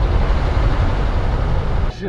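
Steady low rumble of a van driving, heard from inside the cabin.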